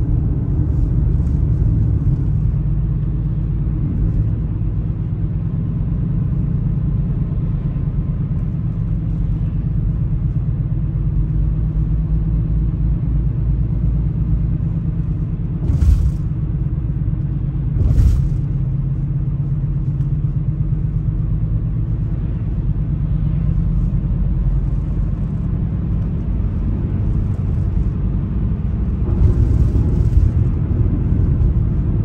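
Steady low rumble of a car driving, its engine and tyres heard from inside the cabin. Two brief thumps about two seconds apart come near the middle.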